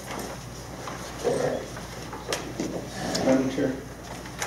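Quiet, indistinct talk in a meeting room, with a few sharp clicks and knocks, the loudest a little past the middle.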